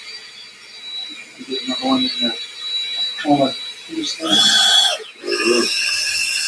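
Cordless drill with a mixing paddle running in a plastic bucket, starting up in the second half and then running steadily. People's voices are heard over it.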